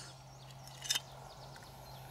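Faint handling of the shot-through steel scissor pieces, one short rustle just under a second in, over a quiet background with a faint steady low hum.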